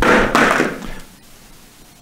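A sudden knock or thud followed by a rushing noise that dies away within about a second.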